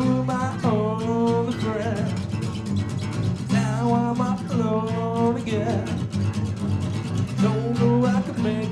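Live rock band playing: strummed acoustic guitar with electric bass and drums, and a voice singing long held notes over them in two phrases and again near the end.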